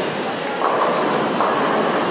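Bowling alley din: balls rolling down the wooden lanes in a steady rumble, with short clacks of pins and balls, the sharpest about a second in, and background voices.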